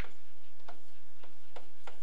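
Light, irregular clicks of a stylus tapping on a touchscreen as digits are handwritten, about four or five in two seconds, over a steady low hum.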